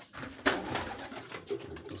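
Domestic pigeons cooing in a loft, with a sharp clatter about half a second in followed by a brief rustle.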